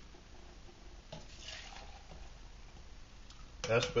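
Hot water poured out of a small aluminium cook pot, a faint splashing hiss lasting about a second and a half that starts about a second in.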